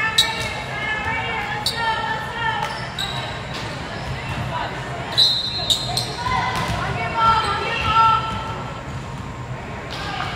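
High-pitched voices of volleyball players and spectators calling out in a gym, with a few sharp smacks of a volleyball being hit or bouncing on the hardwood floor.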